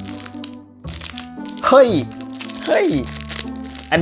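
Clear plastic packaging crinkling as it is handled, mostly in the first second and a half, over steady background music.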